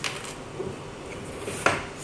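Hard plastic exit-sign housing handled and set down on a tabletop: a light click at the start and a sharper knock about one and a half seconds in.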